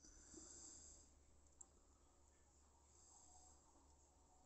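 Near silence: room tone with a faint steady hum, and one tiny click about one and a half seconds in.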